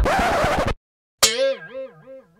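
A cartoon 'boing' sound effect: a twangy pitched tone that wobbles up and down about three times a second as it fades, starting just past a second in. Before it, a noisy sound cuts off abruptly, followed by a short silence.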